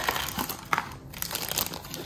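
Clear plastic blind-bag wrapping crinkling as it is handled, with an irregular crackle and one sharper crackle about a second in.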